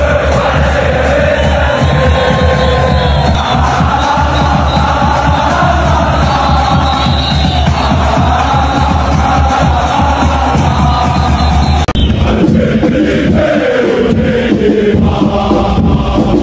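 A Raja Casablanca supporters' chant song, sung in unison by a large crowd of fans over a steady low backing, changing abruptly about three-quarters of the way through.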